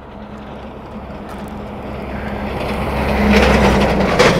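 A truck coming up the road and passing close by, its engine and tyre noise growing steadily louder to a peak near the end.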